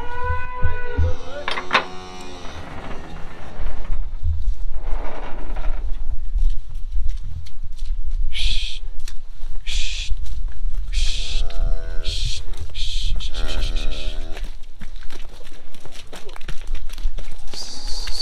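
Cattle being driven on foot: a few drawn-out lowing calls from the cow and calf, with short hissing bursts repeated about once a second around the middle and a low rumble underneath.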